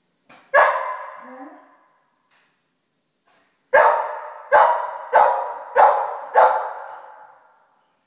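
Golden retriever puppy barking: one bark about half a second in, then after a pause of about three seconds a run of five barks in quick succession. Each bark echoes off the bare walls and hard floor.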